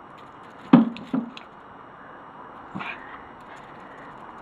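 Two sharp knocks about 0.4 s apart, about a second in, then a softer knock near three seconds: the tethered ball of a garden swingball set being struck and knocking about on its plastic pole.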